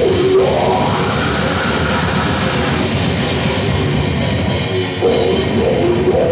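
A death metal band playing live: distorted guitars over a pounding drum kit. A held note climbs in pitch during the first second and stays high for a couple of seconds.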